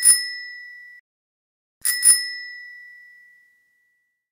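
A bicycle bell rung with a quick double ding, cut off about a second in. It is rung again the same way about two seconds in and left to ring out.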